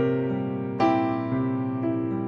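Instrumental music on a piano-type keyboard: three chords struck about a second apart, each ringing and slowly fading before the next.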